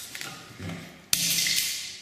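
A sledgehammer striking Koss Porta Pro headphones on a concrete floor: a sudden loud hit about a second in, followed by a hissing rush that fades, and another hit right at the end.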